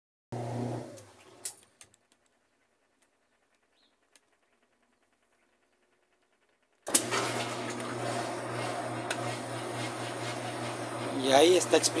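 Whirlpool top-load washing machine running its spin-drain, motor and pump working as the water is pumped out. A short stretch of the steady low hum fades out in the first two seconds, then the sound is gone until about seven seconds in, when the hum starts again abruptly and runs steadily.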